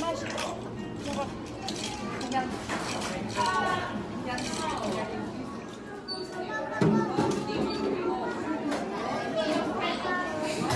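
Indistinct chatter of many children's and adults' voices filling a busy indoor play room, with scattered light clicks and clinks.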